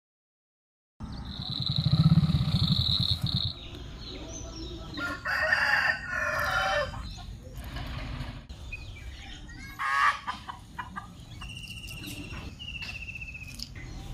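A loud low buzz with a steady high tone for about two seconds near the start, then birds calling: a long call a few seconds in, more calls later, and a rapid trill near the end.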